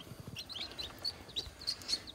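Newly hatched chicks peeping: a scattered string of short, high chirps.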